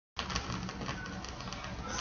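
Vinyl record's lead-in groove playing on a turntable: a steady low hiss with faint crackles and clicks and a low rumble, no music yet.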